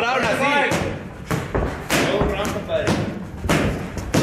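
Boxing gloves landing on a trainer's padded body protector: a run of dull thuds, several in quick succession, as a fighter throws combinations to the body.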